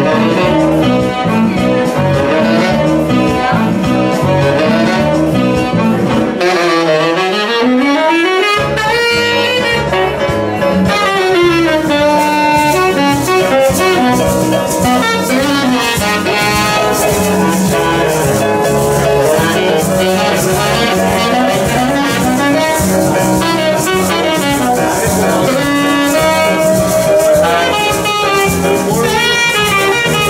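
Live jazz band playing, with a saxophone carrying a flowing melodic line over bass guitar, keyboard and light percussion. The bass drops out briefly about seven seconds in, then the groove returns.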